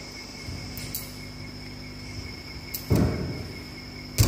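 Low room noise with a steady high-pitched whine at two pitches, a few faint clicks, and a brief louder noise about three seconds in.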